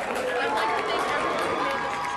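Indistinct talking, with no words clear enough to make out.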